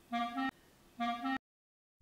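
A clarinet playing the same short two-note phrase twice, each phrase under half a second, the second note a step higher than the first.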